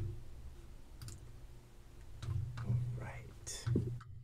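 Open microphones on a video call: a steady low hum with a few clicks, and a faint, indistinct voice in the second half.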